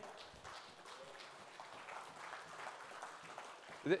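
Light, scattered applause from a church congregation, many soft claps blending into a steady patter.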